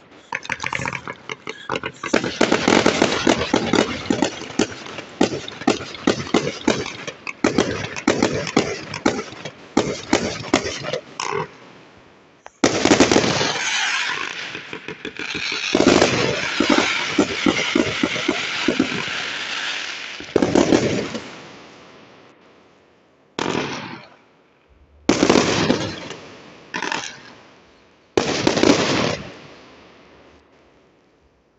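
Fireworks going off: a rapid string of cracks and bangs for the first ten seconds or so, then a series of separate, louder bursts two to three seconds apart, each dying away before the next.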